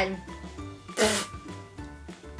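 A woman lets out one short, sharp breathy vocal burst about a second in, a disgusted reaction to a foul-tasting jelly bean, over faint background music.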